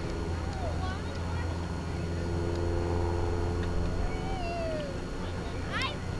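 Distant single-engine propeller aerobatic plane, a Van's RV-4, droning steadily as it pulls to vertical and rolls. A few short, wavering pitch glides sound over the drone.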